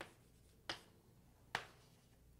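Faint writing on a lecture board: three sharp, irregular taps as the writing tip strikes the board.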